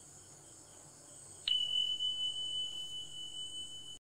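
A steady, high-pitched electronic beep tone starts abruptly about a second and a half in and holds unbroken, over a faint steady high hiss.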